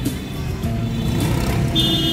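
Background music over the steady rumble of street traffic and vehicle engines, with a short high-pitched tone near the end.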